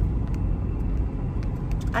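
Steady low rumble of a car driving on the road, heard from inside the cabin. A woman's voice starts right at the end.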